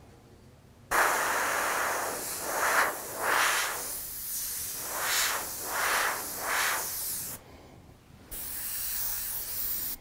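Airbrush spraying paint in short passes: a hiss of air that starts about a second in, swells and eases several times as the trigger is worked, stops briefly near three-quarters of the way through, then starts again.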